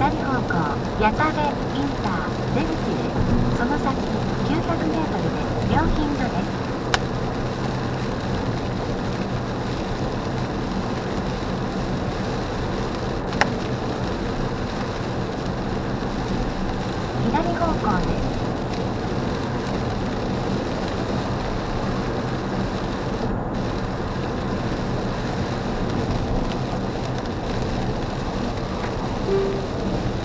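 Steady road and tyre noise heard inside a car's cabin while driving at highway speed on a wet, rain-soaked road, with a low engine drone underneath. Two sharp clicks stand out, one about a third of the way in and one near the middle.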